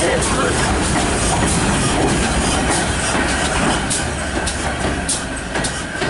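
Steam-hauled passenger train passing close by at low speed, with the wheels clicking irregularly over the rail joints.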